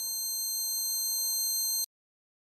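A high-pitched electronic ringing drone, several steady high tones with a lower wavering one over a faint hiss. It swells slightly, then cuts off suddenly with a click near the end.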